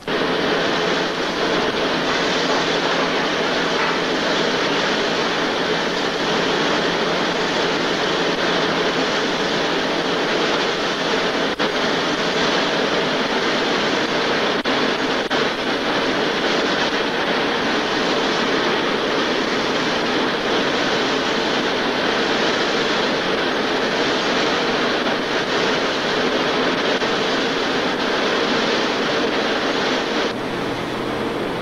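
Textile machinery running: a frame with rows of bobbins and spindles gives a loud, steady, dense whirring clatter.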